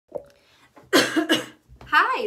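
A woman coughs twice in quick succession about a second in, after a faint tap near the start; her speech begins right at the end.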